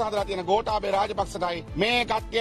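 A man speaking fast and forcefully in Sinhala, his voice raised.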